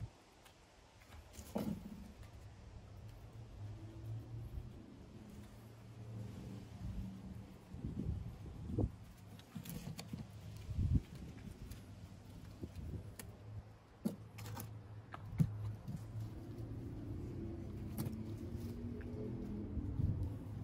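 Quiet handling sounds as a wooden hammer handle wrapped in inner-tube rubber is greased by gloved hands, with a few light knocks of tools on the wooden table over a low steady hum.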